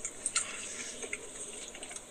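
Faint steady hiss with a few soft clicks, in a short pause between spoken phrases.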